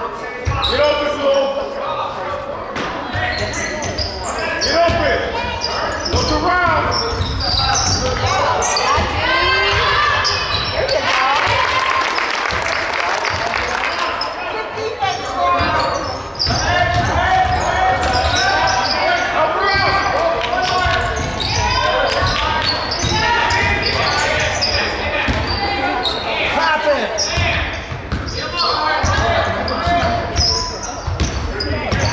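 Live basketball game in an echoing gym: the ball bouncing on the hardwood floor, with players, coaches and spectators calling out throughout, and a burst of crowd noise about halfway through.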